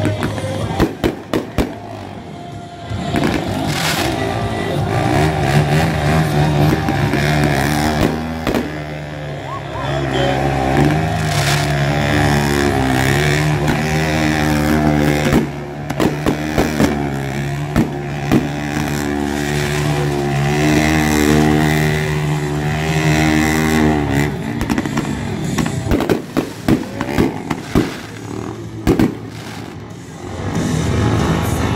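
Fireworks going off in a string of sharp bangs and crackles, over music and a steady low drone.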